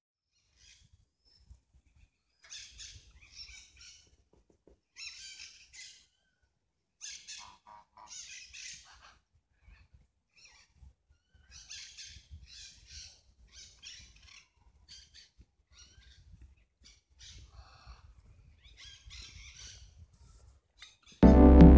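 Birds calling: repeated bursts of short, high chirps throughout, with a few lower calls among them.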